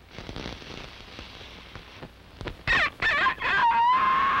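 A cartoon chick's voiced cock-a-doodle-doo crow. After a quiet start, a few loud calls that swoop up and down begin about two and a half seconds in, then settle into one long held note near the end.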